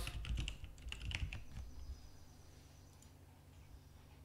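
Computer keyboard typing: a quick run of keystrokes that stops about a second and a half in, leaving a low steady hum.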